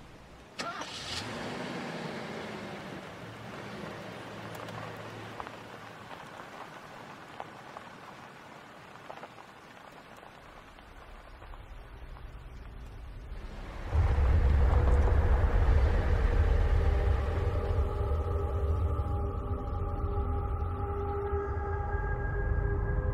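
A car engine starts and runs as the car pulls away, its sound slowly fading over about ten seconds. About fourteen seconds in, loud music begins suddenly, with a deep low drone and long held notes.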